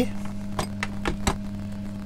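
A few light clicks and taps from a small circuit board being picked up and handled, over a steady low hum.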